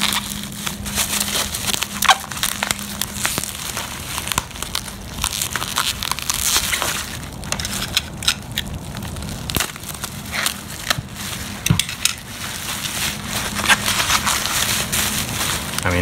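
Plastic bubble wrap crinkling and crackling as it is pulled open and peeled away by hand, with many sharp crackles scattered throughout.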